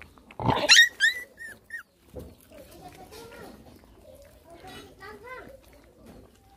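Puppies yelping and squealing while they feed: a loud burst of sharp, high yelps in the first two seconds, then softer whining and whimpering.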